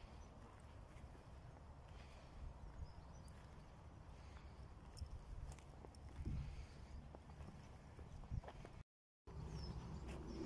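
Faint footsteps of someone walking on grass and soft earth, with a low rumble of wind and handling on the phone's microphone and a few light knocks. The sound drops out completely for a moment near the end.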